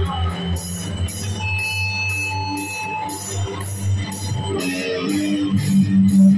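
Live band music: an electric guitar playing sustained notes over a low bass and a steady beat of about two cymbal-like hits a second.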